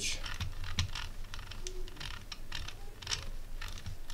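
The rotary encoder knob of a ZK-4KX buck-boost converter module is being turned, giving a string of quick, uneven clicks as the output voltage is stepped up.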